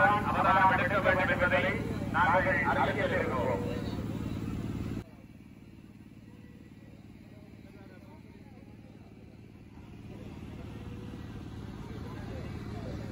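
Untranscribed voices over a steady low motor hum. About five seconds in, the sound drops suddenly to fainter background voices and hum, which grow louder again near the end.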